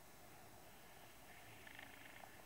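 Near silence: room tone, with a faint, rapidly pulsing high sound coming in about halfway through.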